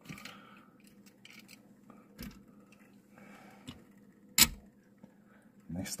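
Handling of a die-cast toy car on a display turntable: scattered light clicks and taps, with one sharp click about four and a half seconds in.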